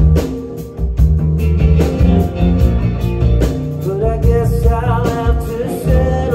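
A live rock band playing a song: drums keeping a steady beat under electric guitar, acoustic guitar and keyboard.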